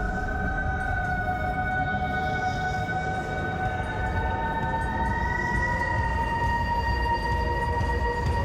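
Eerie background score: held, sustained tones over a low rumble, with a higher pair of held tones coming in about halfway through.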